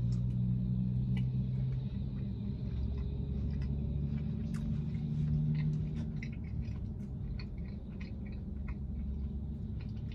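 A person chewing a mouthful of soft cookie with the mouth closed: many small, wet mouth clicks and smacks over a low steady hum.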